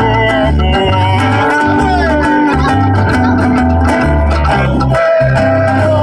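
Live Hawaiian-style music: a group of singers with guitars over a plucked bass line that steps from note to note.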